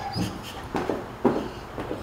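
Dogs behind a kennel fence making four short, noisy sounds about half a second apart.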